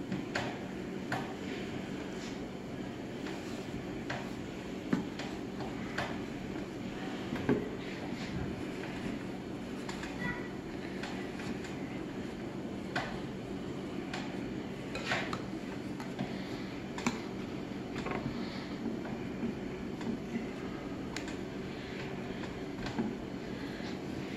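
Scattered light taps, knocks and crunches at irregular intervals as stiff, rigidized ceramic fiber blanket is packed by hand into a sheet-steel forge box. A steady low hum runs underneath.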